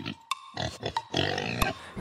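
Pig oinks and grunts, a few short ones and then a longer one, over faint backing music.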